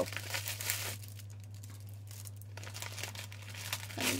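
Thin plastic card sleeves crinkling and rustling as they are handled, busiest in the first second and again in the last second and a half, over a low steady hum.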